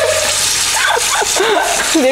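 Kitchen faucet running in a steady stream into a metal sink while raw ground beef is rinsed by hand under it, a continuous hiss of water. Short bits of laughing voice sound over it in the middle.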